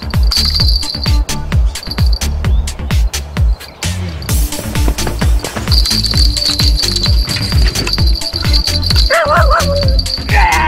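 Electronic dance music with a fast, steady beat and a deep bass.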